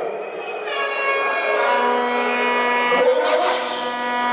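Air horns blown in long, steady blasts, the first starting under a second in and a second, lower-pitched horn joining about halfway, over the noise of a crowd.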